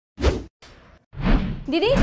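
Whoosh transition sound effects: a short whoosh near the start, then a longer, louder one about a second in. A woman's voice calls "Didi" just at the end.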